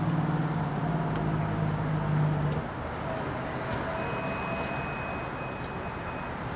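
Motor vehicle engine idling: a low steady hum that cuts off about two and a half seconds in, leaving steady street and traffic noise.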